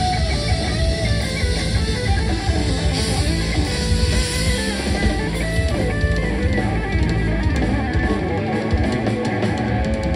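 Live rock trio playing: electric guitar lead notes that slide and bend, over bass guitar and a drum kit with cymbals.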